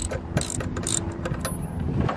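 Ratchet wrench clicking in short runs as a spark plug is unscrewed from an air-cooled aircraft engine's cylinder head.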